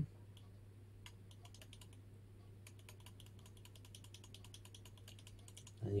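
Faint clicking at a computer: a few scattered clicks, then a quick, even run of about ten clicks a second lasting a couple of seconds, as the dock's icon size is stepped down.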